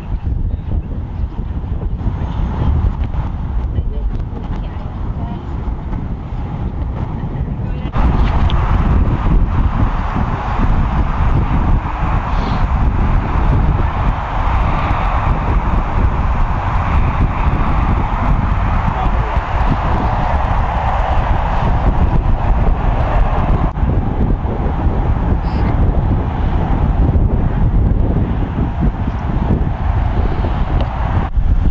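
Wind rumbling on an outdoor microphone, steady and noisy, stepping up in loudness about eight seconds in.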